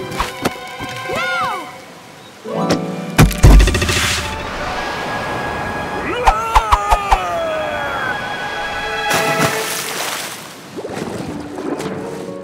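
Dramatic cartoon score with sound effects: a heavy thud about three seconds in, a quick run of sharp wooden cracks around six seconds in, then a loud rush of water as the tiger falls into the river.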